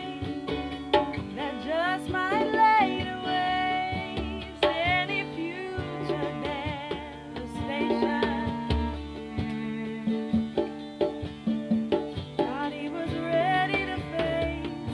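A woman singing close up, with an acoustic guitar strummed and a hand drum played behind her, recorded binaurally for headphone listening.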